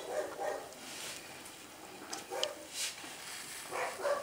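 A young dog whining faintly in short, separate bursts, a few times, in pain while its infected castration wound is being cleaned.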